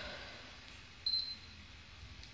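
A pause in speech: quiet room tone, broken about a second in by one short, high-pitched beep.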